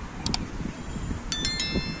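A short mouse-click sound effect, then about 1.4 s in, a bright bell chime of several ringing tones lasting about half a second: the sound effects of a subscribe-button animation, over outdoor wind noise.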